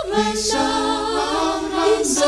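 Malagasy church choir singing a hymn anthem a cappella in several-part harmony, with sustained chords that change about half a second in.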